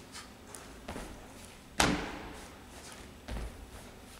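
Feet landing hard as a man jumps down off a low plyometric box onto the gym floor during a kettlebell swing, one sharp thud just under two seconds in. Lighter knocks about a second in and a dull thump near three seconds.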